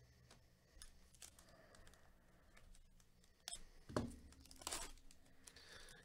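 Faint clicks and rustles of basketball trading cards being handled and slid past one another by gloved hands, with a few louder card snaps between about three and a half and five seconds in.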